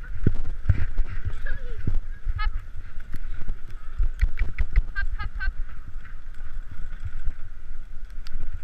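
A pair of horses pulling a driving vehicle over snow: constant low knocking and rumble of hooves and the rig shaking the mounted microphone, with a steady hiss and clusters of short high squeaks from the moving harness and vehicle.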